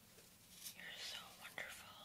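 A woman whispering softly, starting a little over half a second in, with a small click about one and a half seconds in.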